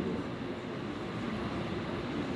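Steady low background hum and room noise, with no distinct event.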